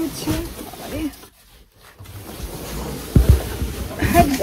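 Large cardboard carton being handled and rummaged, with scraping and rustling, and a low double thump about three seconds in; a brief bit of voice at the very start.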